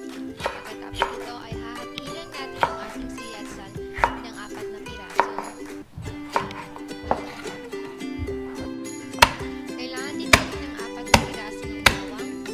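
Chef's knife chopping mini sweet peppers on a wooden cutting board: about a dozen irregular knife strikes, the last few sharper and louder, over background music.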